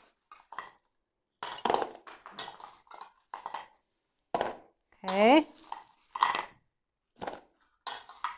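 A metal spoon clattering and scraping against a bowl as wrapped sweets are scooped up and tipped into a second bowl: a quick, irregular run of clinks and knocks. A brief exclamation from a voice cuts in about five seconds in.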